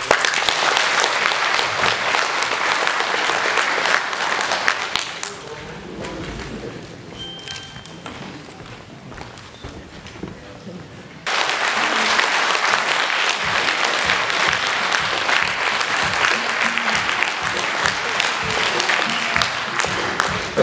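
Audience applauding in a hall. The clapping thins out to a quieter stretch midway, then comes back loud and steady, starting abruptly.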